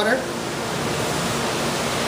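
Steady, even rushing hiss of background noise in an equipment room.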